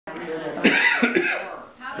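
Indistinct voices talking, loudest about half a second in, with a rougher, noisy sound in the middle that may be a cough or laugh mixed into the speech.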